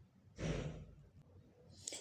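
A person's breathy sigh about half a second in, fading out over about half a second, then a quick breath in near the end.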